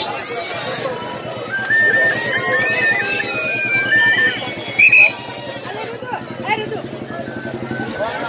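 Voices of a crowd mixed together, with a high melody of short held notes stepping up and down for a few seconds, and a brief shrill high note about five seconds in.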